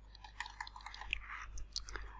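Faint, scattered small clicks close to the microphone, with a soft breathy hiss a little past halfway.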